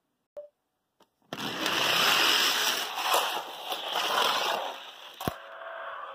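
Hot Wheels die-cast cars running down a plastic Hot Wheels track: two small clicks, then a loud rolling rattle for about three seconds that tapers off, and a single sharp knock near the end.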